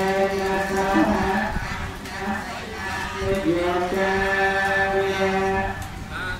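Khmer Buddhist chanting: one voice holds long, drawn-out notes, sliding up into some of them, with short breaks between phrases.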